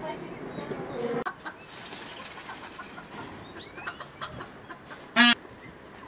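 Chickens clucking, with a few high chirps in the middle and one short, loud squawk about five seconds in.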